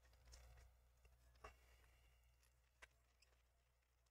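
Near silence: faint room tone with two faint sharp clicks, about a second and a half and about three seconds in.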